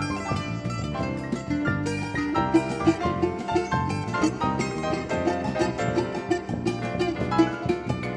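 A small choro ensemble playing live: a bandolim (Brazilian mandolin) with quick plucked notes over an electric bass, electric keyboard and drum kit.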